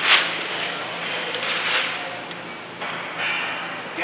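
A large sheet of flip-chart paper rustling as it is flipped over the top of the pad, loudest right at the start, with a second rustle of paper a little over a second in. Near the end a marker scratches across the fresh sheet.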